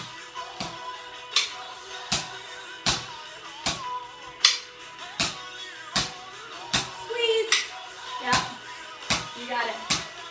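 A song with singing plays, with a sharp click about every three quarters of a second as wooden drumsticks strike the floor on the beat at the bottom of each squat.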